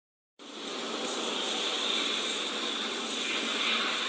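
Steady road and tyre noise inside a moving car, with a hiss of tyres on a wet road, starting suddenly about half a second in.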